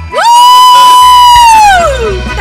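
A man sings one long, very high note into a microphone: it rises in, holds steady for over a second, then slides down near the end.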